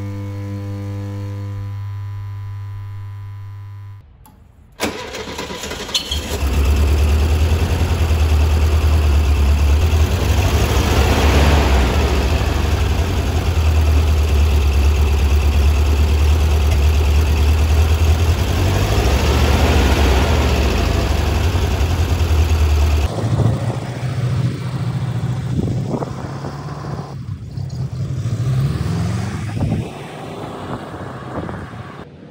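A held music chord fades out. About five seconds in, the 1978 Volkswagen Super Beetle's air-cooled 1600cc fuel-injected flat-four engine starts and idles steadily, revved briefly twice in the middle. For the last several seconds the car is heard from outside pulling away, with wind noise.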